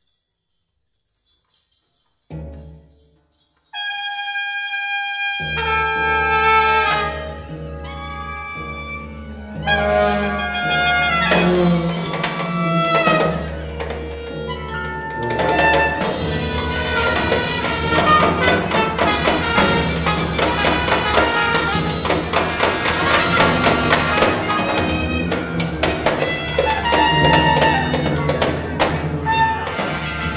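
Free improvisation by a small ensemble of tuba, cello, woodwind and percussion. After about two seconds of near silence a low held note enters, high sustained notes join near four seconds in, and the music thickens into a loud, dense ensemble texture.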